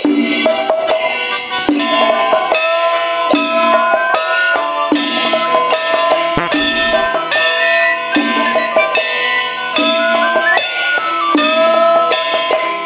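A traditional Chinese ensemble of Tang-style instruments (dizi flute, sheng, pipa, guzheng and drums) playing a lively tune, with held, gliding wind notes over a steady beat of ringing percussion strikes about every 0.8 seconds.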